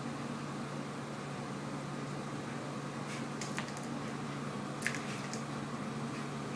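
Steady low background hum and hiss, with a few light clicks and taps in the second half.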